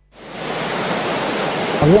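Rushing surf sound effect of a TV channel ident: a steady wash of noise like breaking waves that swells in over about half a second. A man's voice begins just before the end.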